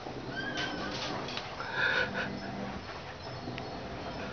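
Domestic cat meowing twice: a short call about half a second in and a louder one near two seconds in.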